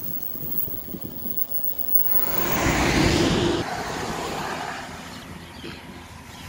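A road vehicle passing by: its noise swells to a peak about three seconds in, then fades away.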